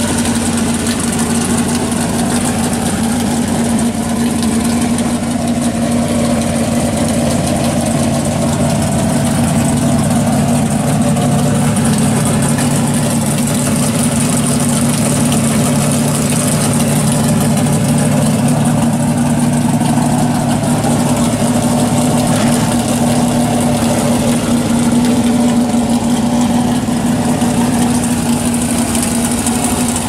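A 1968 Chevelle pro street drag car's engine idling steadily through its exhaust, with an even, unchanging pitch.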